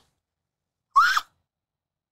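Silence broken about a second in by one short vocal sound from a person, a brief upward-gliding gasp.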